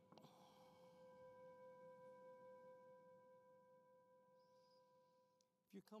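A single faint meditation bell tone, struck once and ringing out with a slow fade over about five seconds, played from a phone.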